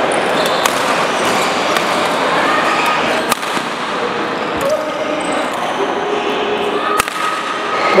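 Busy indoor badminton hall: a steady, reverberant wash of many players with background voices, and sharp racket-on-shuttlecock hits now and then, two of them loud, about three and seven seconds in.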